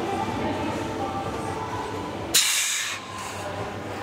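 A man's sharp, hissing exhale through the mouth a little past halfway, made while pressing a heavy barbell in partial bench-press reps. A steady low hum runs underneath.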